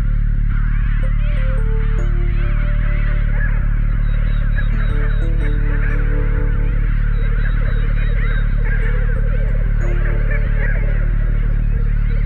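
A dense chorus of many overlapping, wavering animal calls, like a flock, laid over a chill-out electronic track with a deep steady bass drone and slow sustained synthesizer notes.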